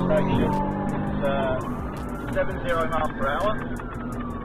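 Police car siren on a slow wail, its pitch falling and then sweeping up and down again over a couple of seconds, heard from inside the pursuing police car over a steady low engine hum.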